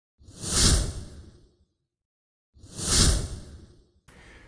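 Two identical whoosh sound effects, each swelling and fading away over about a second, the second about two and a half seconds in, with silence between them.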